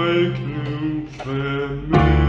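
A man sings a slow song in Icelandic in long held notes over a sustained low accompaniment.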